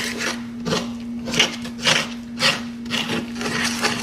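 Banana bread batter being stirred by hand in a mixing bowl, the utensil scraping the bowl in rhythmic strokes about twice a second.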